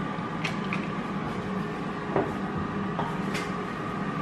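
Steady background hum and hiss of a running kitchen appliance, with a few light clicks and taps.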